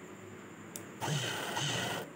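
A single click, then about a second of cloth rustling as hands shift and smooth fabric under a sewing machine's presser foot.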